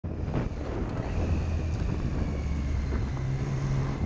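Triumph Street Triple's three-cylinder engine running under way, with wind noise on the microphone. The engine note shifts up a little about three seconds in.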